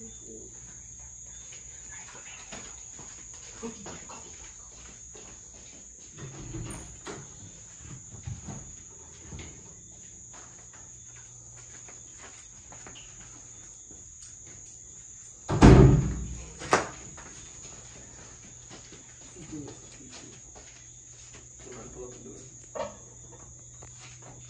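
Steady high insect chirring. A loud thump comes a little past the middle, and a smaller second thump follows about a second later.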